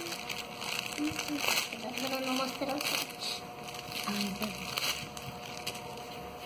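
Plastic gift wrapping crinkling and rustling in short spells as a present is unwrapped, with quiet murmured voices in between.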